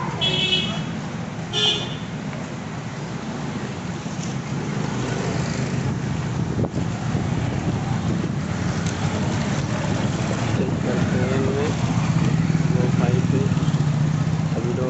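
Street traffic with a steady low engine hum throughout. Two short horn toots come in the first two seconds, and voices sound faintly in the background.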